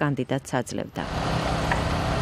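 Narration for about the first second, then the steady engine noise of heavy construction machinery running on a building site.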